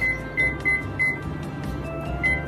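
Four short, high-pitched beeps from an Amway Queen induction cooktop's control panel, one for each press as the power setting is stepped down from 8 to 4 to bring a boiling pot to a low simmer, over steady background music.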